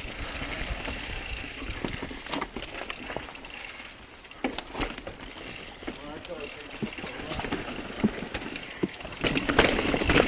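Mountain bike ridden down a dirt trail: steady tyre and rolling noise with frequent irregular clicks and knocks from the bike rattling over rough ground.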